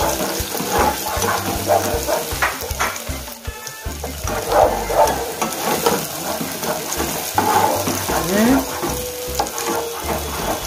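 Chopped onions, peppers, carrots, garlic and ginger sizzling in hot oil in a non-stick pot on high heat, stirred with a spatula in repeated scraping strokes. The sizzle dips briefly about three and a half seconds in.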